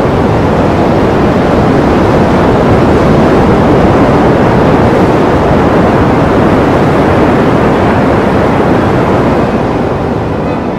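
Loud, steady rushing noise with no tone or beat, easing slightly near the end.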